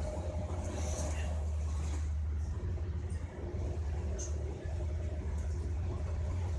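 Steady low rumble of a moving passenger train heard from inside the carriage, with a few short clicks and rattles over it.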